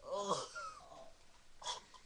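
A teenage boy laughing, wheezy and breathy: a loud burst right at the start and a short huff of breath near the end.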